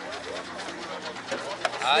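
Background voices of people talking, with a man's voice starting up close near the end.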